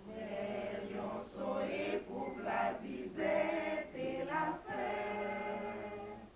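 A small mixed choir of men and women singing a cappella in French, coming in together at the opening and carrying on in phrases with short breaths between them.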